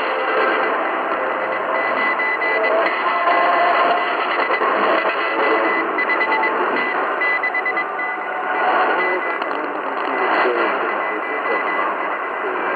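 Shortwave radio reception around 6 MHz: a high Morse code tone keyed on and off, buried in a dense wash of noise and interfering signals.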